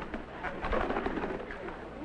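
A man's low, indistinct vocal sounds with no clear words.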